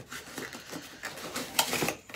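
Packaging and accessories being handled during an unboxing: a quick run of small clicks and rustles, with a louder rustle about a second and a half in.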